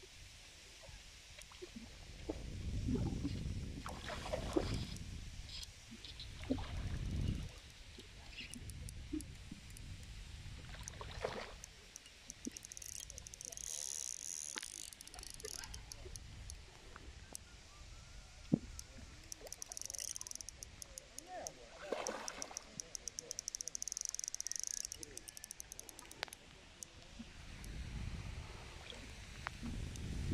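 Outdoor lakeside ambience: low gusts of wind on the microphone in the first seconds, faint voices in the distance, and a pulsing high-pitched buzz in the second half.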